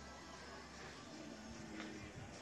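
Quiet outdoor background: a low steady hum with faint distant sounds, perhaps a voice in the second half, and no racket or ball strikes.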